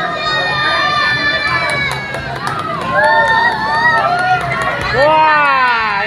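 A group of people shouting and cheering, several voices overlapping in long, drawn-out calls that rise and fall in pitch, loudest about five seconds in.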